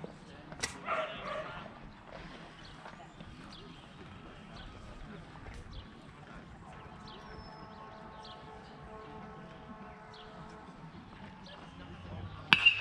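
Faint outdoor ambience with a sharp click about half a second in and a brief call just after it. From about six seconds in, a faint steady hum of several tones joins in.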